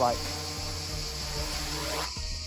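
A 7-inch FPV quadcopter's Stan FPV 2604 1690 KV motors and Gemfan 7035 props humming steadily as it lifts off and climbs away, over a constant chirring of crickets.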